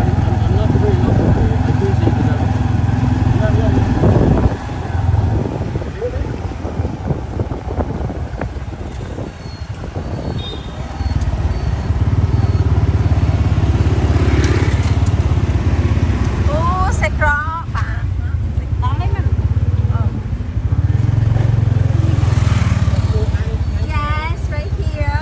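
Tuk-tuk's motorcycle engine running with road and street-traffic noise during the ride. The engine's rumble drops away for several seconds about a quarter of the way in, then picks up again. Voices are heard over it.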